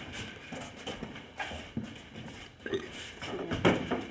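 Boxing sparring: feet shuffling and stepping on a foam gym mat, with a few sudden dull knocks of gloved punches landing, the loudest near the end.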